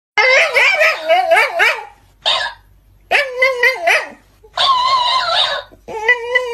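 Shiba Inu dog yowling and whining in a warbling 'talking' voice: four drawn-out calls whose pitch wavers up and down, the first nearly two seconds long, separated by short pauses.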